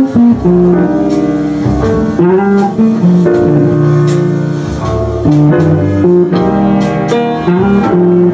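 Hollow-body archtop jazz guitar and grand piano playing a jazz standard as a duo, the guitar's plucked notes and chords to the fore over piano accompaniment.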